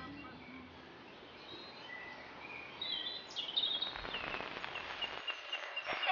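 Faint high chirps and short whistled glides, like bird calls, over a low hiss, starting about two seconds in; the tail of a music track fades out at the very start.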